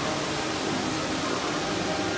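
Steady hissing background noise of a busy indoor public hall, with no distinct events.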